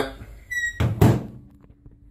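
Microwave oven door being shut: a short high squeak about half a second in, then two thunks in quick succession as the door latches.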